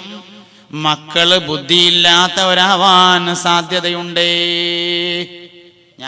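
A man's voice chanting a melodic religious recitation, the pitch wavering through ornamented phrases. About four seconds in, he holds one long steady note for about a second, then stops.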